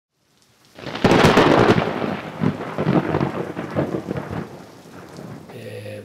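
Thunder with rain: a sudden loud crack about a second in that rumbles and fades away over the next four seconds.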